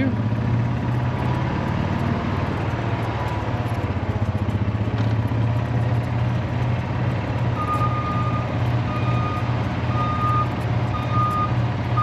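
A steady engine rumble, with a backup alarm starting about two-thirds of the way in and beeping a single high tone roughly once a second.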